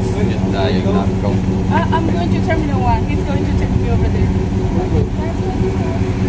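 A passenger van's engine idling, a steady low hum with an even pitch, while people talk close by.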